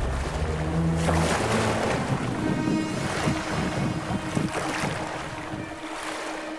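Small waves washing up a pebble beach, in uneven surges, with wind on the microphone, fading toward the end.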